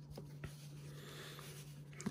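Faint handling of stacks of paper baseball trading cards on a table: light rustling with two soft taps in the first half-second, over a low steady hum.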